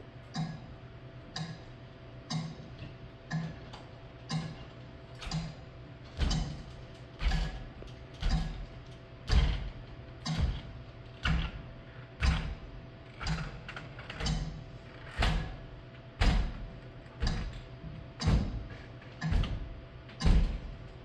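Steady clock-like ticking, about one tick a second; from about six seconds in each tick is louder and joined by a deep thud.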